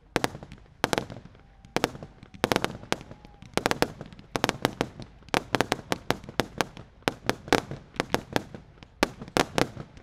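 Consumer firework cakes firing volleys of shots that crack and burst overhead: sharp bangs, a few at first and then several a second from about halfway through.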